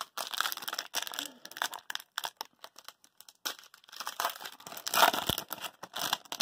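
Foil wrapper of an Upper Deck hockey card pack crinkling and tearing as it is opened by hand, in irregular crackles that thin out midway and pick up again.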